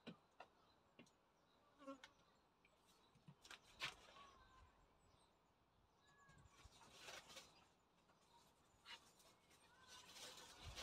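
Near silence: faint rustling and a few light clicks and knocks of beekeeping gear being handled, the clearest about four seconds in.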